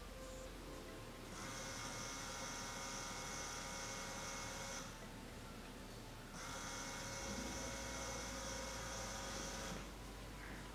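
Small DC hobby motor spinning a plastic propeller fan, a steady high whine that runs for about three and a half seconds, stops, and starts again for another three and a half seconds.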